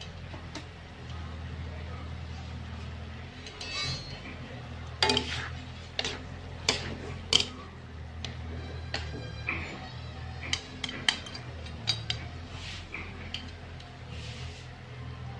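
Wooden chopsticks knocking and scraping against a non-stick wok while stir-frying shredded kohlrabi and pork, giving irregular sharp clicks, most of them from about five seconds in. A steady low hum runs underneath.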